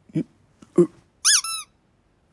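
Cartoon sound effects: two short, low grunts, then two high squeaks, the first bending up and down in pitch and the second held steady.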